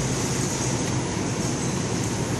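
Steady background noise of a large store: an even hiss with a faint low hum, with no sudden events.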